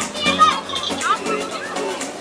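Children's high voices and chatter, with music underneath.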